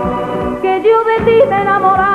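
Band playing an instrumental passage of a Spanish song: a melody of short stepped notes over bass and drum beats. It comes right after the singer's last held, wavering note.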